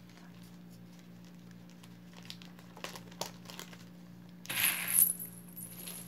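Small clicks and clinks of jewelry being handled on a tabletop, then a louder rustling, crinkling noise about four and a half seconds in. A steady low hum runs underneath.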